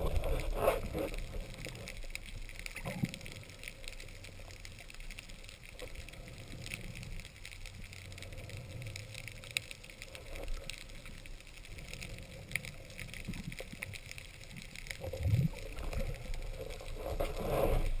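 Underwater sound through a camera housing: a low rumble of moving water with scattered small clicks and crackles. Louder surges of water noise come about fifteen seconds in and again near the end.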